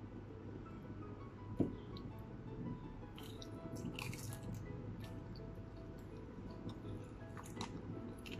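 Close-up biting and chewing of crispy batter-fried cempedak, with crunchy bursts about three to four seconds in and a low thump about one and a half seconds in, over soft background music.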